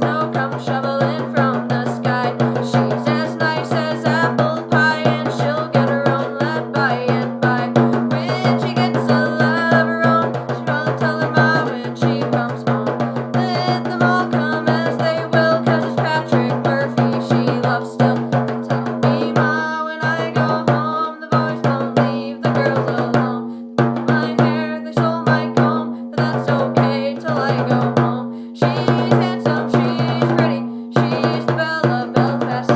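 Bodhrán (Irish frame drum) played in a fast, steady rhythm. From about two-thirds of the way in, the playing breaks into short phrases with brief stops between them.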